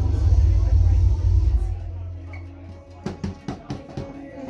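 Live band music, heavy in the bass with little treble, which drops away about two seconds in. Near the end, separate drum hits begin.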